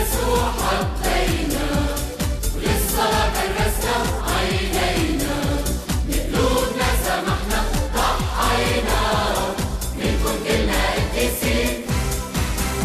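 A Christian hymn sung by voices over a full backing with a steady beat.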